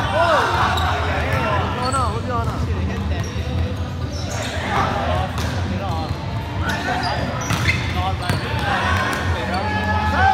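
Indoor volleyball rally in a gym hall: players' shouts and calls echo, with sharp slaps and thuds of the ball being hit and striking the floor.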